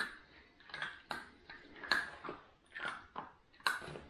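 Whippet puppy chewing treats taken from the hand, a run of short, sharp crunches at uneven intervals.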